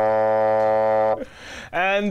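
A bassoon playing a short phrase that ends on one low note held for about a second, then breaks off. A man starts speaking near the end.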